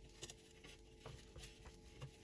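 Near silence, with a few faint, light ticks and rustles from shredded kunafa dough being pressed by hand into a plastic food processor bowl.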